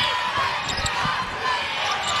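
A basketball bouncing on a hardwood court, a few low thuds in the first half, over steady arena background noise.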